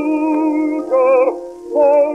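A 1911 acoustic-era 78 rpm record of a baritone with orchestra playing: sustained melody notes with vibrato, in the narrow, boxy tone of an acoustic recording with no high end.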